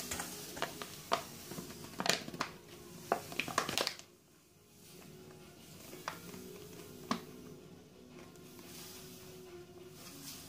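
Caster sugar being poured into a stainless steel mixing bowl on kitchen scales: a busy run of crinkling, rustling clicks from the bag and pour for about the first four seconds, then a softer steady hiss of sugar with a couple of single clicks. Faint background music runs underneath.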